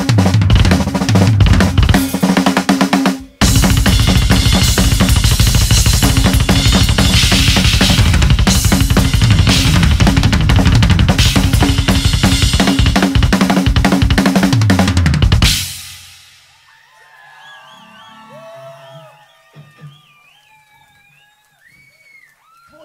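Rock drum kit played live in a fast, dense solo on bass drum, snare, toms and cymbals, with a short break a little after three seconds, stopping about fifteen seconds in. After it, only faint wavering pitched calls are left.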